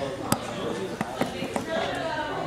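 Low talking broken by several sharp knocks, the loudest about a third of a second in and more around the middle.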